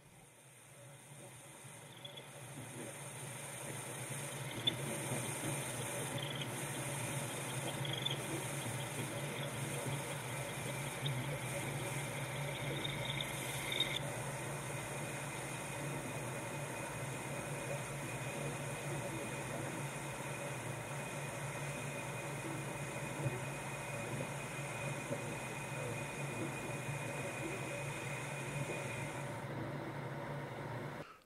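Manual metal lathe running and boring out the centre of a metal billet: a steady motor hum under the hiss of the cutting tool, with a thin high whine and a few faint ticks. The sound fades in over the first few seconds and stops just at the end.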